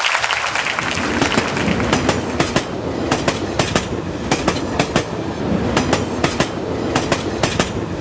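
Sound effect of a passing train: a steady rumbling rattle with many sharp clacks of wheels over the rails.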